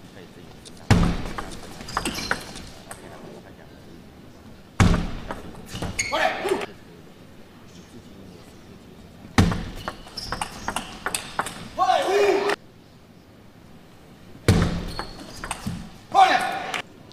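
Table tennis ball clicking off bats and table in short rallies. About four loud bursts of voices follow the points, each lasting a second or two.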